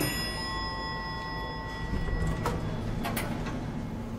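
Elevator arrival chime: a single bell-like ding that rings out for about two and a half seconds. A low rumble and a few sharp clicks follow in the second half.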